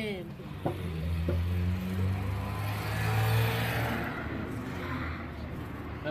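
A motor vehicle's engine hum with a swelling road-noise hiss, loudest about three seconds in and easing off afterwards.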